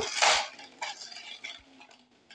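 A short noisy burst right at the start, then a few faint light clinks and scrapes.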